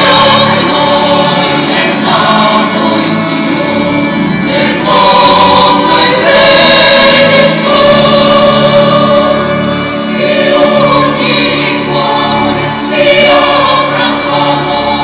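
Church choir singing a sacred hymn in long held notes, with organ accompaniment underneath.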